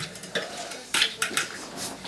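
A handful of short, sharp clatters and knocks, like household objects being handled or bumped.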